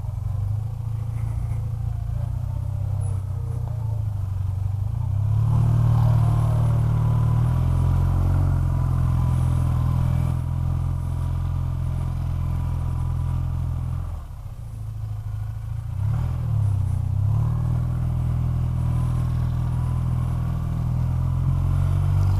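BMW Airhead air-cooled flat-twin motorcycle engine running at low speed in stop-and-go traffic. It pulls harder about five seconds in, drops off-throttle briefly around fourteen seconds, then picks up again.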